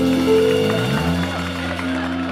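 Live brass-led band (saxophone, trumpet, trombone, electric guitar and bass) playing a quick falling run in the first second, then holding one long chord to end the number.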